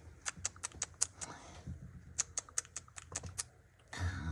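Two quick runs of light, sharp clicks, about six a second, like tapping, each run lasting about a second with a short pause between.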